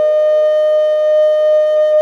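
Background music: a flute holding one long, steady note.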